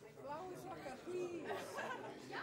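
Faint chatter: several people talking quietly at once, with no music playing.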